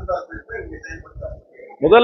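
A man speaking, his voice growing much louder near the end.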